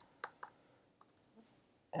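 A handful of faint, irregularly spaced keystroke clicks on a computer keyboard while text is typed.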